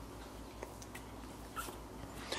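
Faint sounds of two-week-old Cavalier King Charles Spaniel puppies being handled on a blanket: a few light clicks and one brief, high squeak from a puppy about one and a half seconds in.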